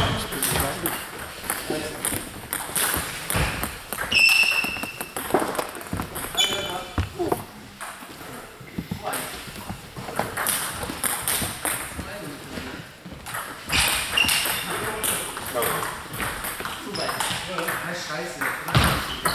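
Table-tennis balls clicking on tables and bats from the games at the surrounding tables, scattered and irregular, echoing in a sports hall. A few short high-pitched squeaks and background voices are mixed in.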